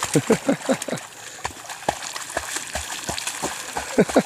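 A young black Labrador pup splashing through shallow water and then paddling as she swims out across a pond, with irregular splashes. A man laughs briefly at the start.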